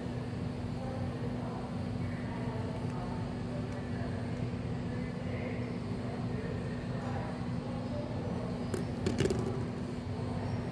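Steady electrical hum with faint voices in the background. A quick cluster of clicks about nine seconds in comes as a phone is set down in the ecoATM kiosk's test compartment.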